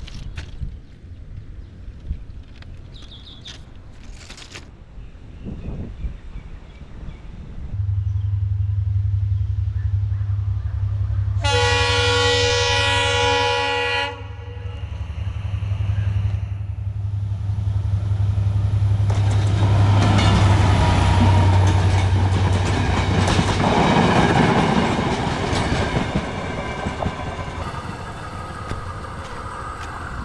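A train passing on the railway line. A low steady drone builds about eight seconds in, the horn sounds once for about two and a half seconds, and then wheels rumble and clatter over the rails before the noise eases off near the end.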